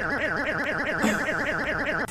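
A sustained pitched sound from the YouTube Poop's soundtrack, warbling evenly up and down in pitch about five times a second. It cuts off at the end.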